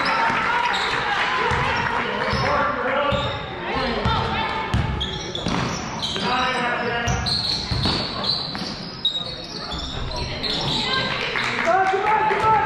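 A basketball bouncing on a hardwood gym floor with irregular thuds, under shouting voices of players, coaches and spectators that echo around the gym.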